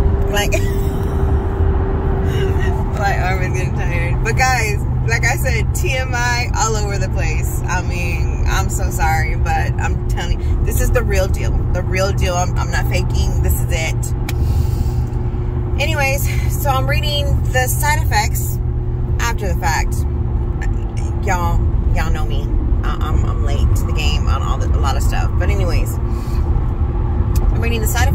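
Steady low road and engine rumble of a moving car, heard inside the cabin.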